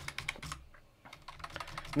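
Computer keyboard typing: a run of separate key clicks, a short pause near the middle, then more clicks, as a few characters are typed and erased with backspace.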